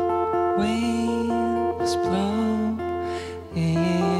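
Live band music: a plucked acoustic guitar over held keyboard chords, with a changing low melody line underneath.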